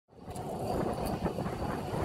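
Rushing wind and road noise from a moving road bike, fading in from silence and holding steady with a few faint ticks.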